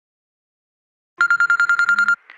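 A telephone ringing: a rapid electronic trill that starts suddenly out of silence about a second in.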